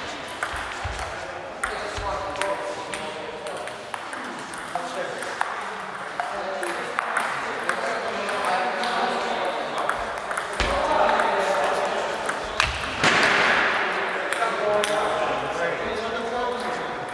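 Table tennis balls ticking sharply and irregularly off paddles and tables, with people talking in the hall.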